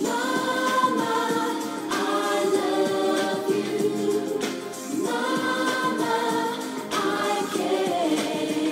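A song with several voices singing together in long held phrases, each new phrase starting every two to three seconds.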